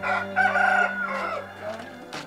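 A rooster crowing once: a single crow of about a second and a half, held and then trailing off.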